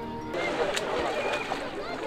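A short held music chord cuts off about a third of a second in. It gives way to open-air lakeside beach ambience: water around a swimmer and distant voices of people on the shore.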